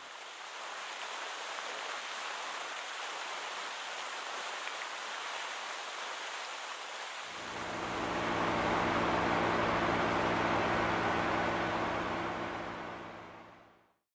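Steady rushing-water noise. About seven seconds in, a deeper rumble with a steady low hum joins and the sound grows louder, then it all fades out near the end.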